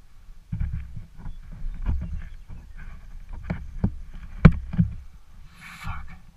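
Rustling and irregular knocks of parachute gear and the nylon reserve canopy being handled close to the microphone, over a low rumble, with the sharpest knock about four and a half seconds in and a brief hiss near the end.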